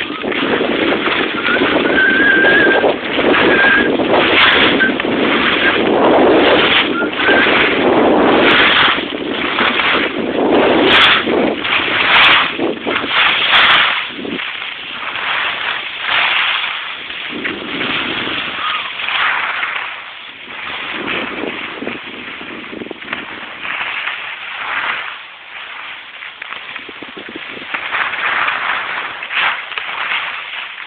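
Wind buffeting the phone's microphone and skis scraping over packed snow while skiing downhill. The rushing is loud and uneven, stronger in the first half and easing off after the middle.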